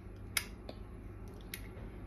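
Low steady room hum with one sharp click about a third of a second in and two faint ticks later.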